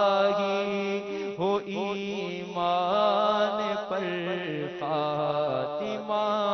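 A man singing an Urdu devotional dua in a slow chant, with long held notes that glide and waver, over a steady low drone.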